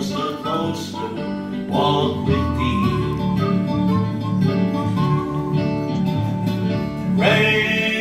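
A man singing a gospel song into a microphone over instrumental accompaniment, holding long notes, with a new phrase starting near the end.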